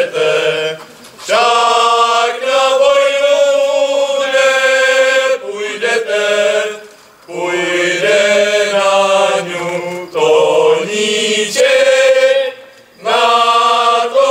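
A group of young men singing a Moravian folk song together in unison, in long held phrases with short breaks between them.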